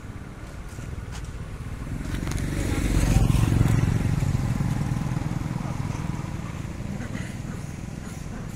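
A motorcycle passing on the road, growing louder to a peak about three seconds in and then fading as it goes by.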